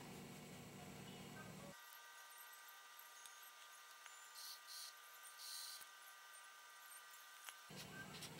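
Near silence: faint room tone, with two faint soft swishes about halfway through from a wet round watercolor brush stroked over watercolor paper to smooth out pencil color.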